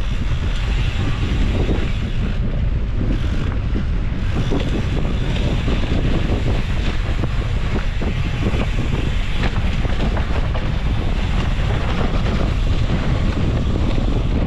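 Wind rushing over an action camera's microphone on a moving mountain bike, with a constant crackle of tyres on dry dirt and gravel and the bike rattling over the bumps.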